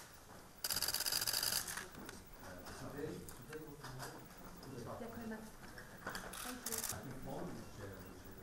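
Camera shutters firing in rapid bursts: a loud run of clicks lasting about a second, starting just after the beginning, and a shorter burst near seven seconds, over low murmuring voices in the room.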